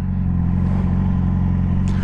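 A 2017 Yamaha R6's inline-four engine running at a steady low note with no change in revs, heard through a helmet microphone while the bike rolls slowly.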